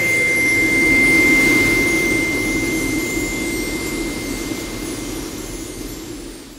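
Synthetic whoosh sound effect for an animated logo card: a steady high whistle over a low rushing noise, loudest about a second in and then slowly fading.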